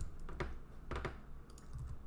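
A few separate keystrokes on a computer keyboard, short clicks spaced through the two seconds.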